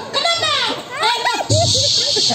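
Speech only: a performer talking, rapid and high-pitched, with a hissing consonant sound about a second and a half in.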